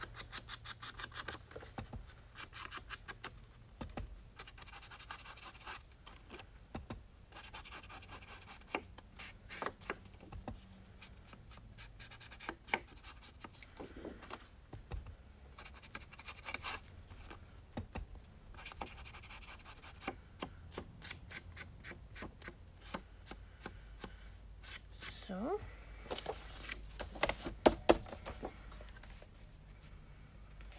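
Paper being handled and rubbed: a foam ink-blending tool is scrubbed over a sheet of patterned paper, with scratchy rubbing, rustling and many small clicks and taps. A few louder clicks come near the end.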